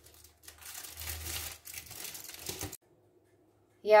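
Aluminium foil crinkling as a foil packet is unfolded by hand, lasting about two seconds before it stops.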